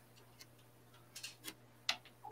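Four faint, sharp clicks spread over two seconds, the last the loudest, over a low steady electrical hum.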